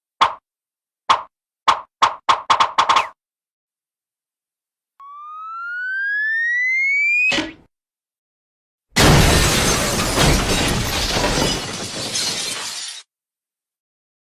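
Cartoon sound effects: a run of short knocks that speed up, then a rising whistle that ends in a thud. About a second and a half later comes a long crash of breaking and shattering that lasts about four seconds.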